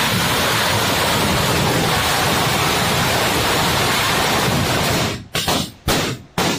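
A long string of firecrackers going off, the bangs so rapid they merge into one dense, continuous crackle. Near the end it breaks up into a few separate bursts with short gaps between them.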